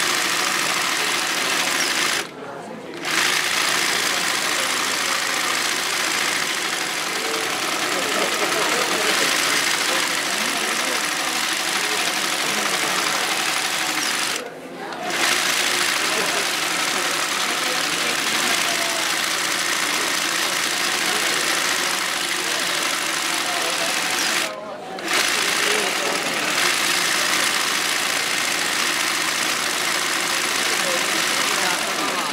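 Yokoburi side-swing embroidery sewing machine running steadily as it stitches a satin fill, stopping briefly three times: about two seconds in, halfway through, and about twenty-five seconds in.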